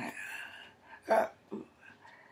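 A woman's voice making a few short vocal sounds, the loudest a single sharp, clipped one about a second in, followed by a smaller one.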